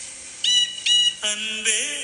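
Tamil film song: two short, high, whistle-like notes, then a held melodic line with a slight bend in pitch begins just past a second in.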